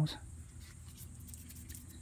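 The end of a spoken word, then faint steady low background noise with a few soft clicks.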